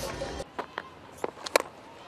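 A few sharp knocks over faint ground noise, the loudest and sharpest about one and a half seconds in: the crack of a cricket bat hitting the ball.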